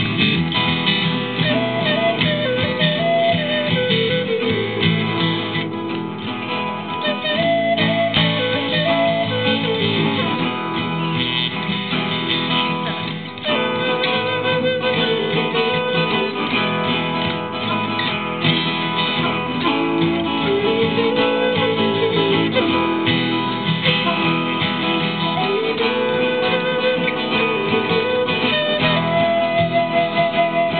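Native American flute playing slow phrases of long, slightly wavering notes with short breaks between them, over two acoustic guitars strumming and picking a steady accompaniment.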